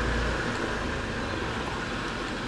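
Steady ambient hiss with a low rumble that fades out about half a second in.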